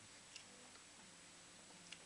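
Near silence: room tone with a faint hum and two small clicks, one about a third of a second in and one near the end.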